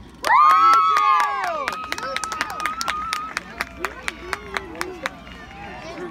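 A group of young children shouting a loud, high "yay!" together, followed by scattered hand clapping that fades over a few seconds.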